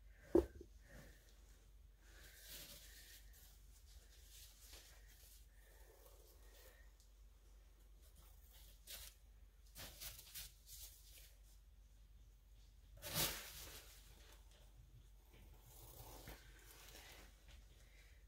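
Faint handling noises from craft work: a single sharp knock about half a second in, then scattered brief rustles, the loudest about two-thirds of the way through.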